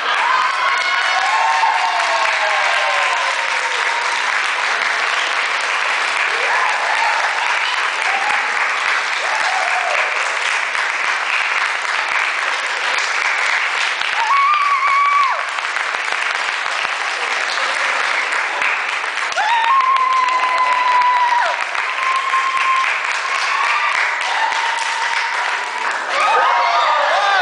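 Audience applauding steadily throughout, with held cheering calls and whoops from the crowd rising above the clapping several times.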